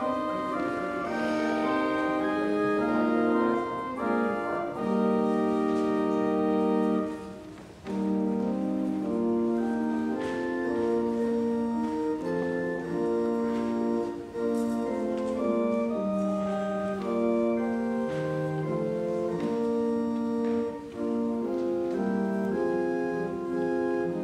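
Church pipe organ playing slow, held chords that change every second or two, with a brief break between phrases about eight seconds in.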